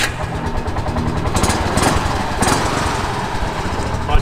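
Auto rickshaw's small engine running with a rapid, even putt-putt as the rickshaw pulls away. A few sharp clicks or knocks come in the middle.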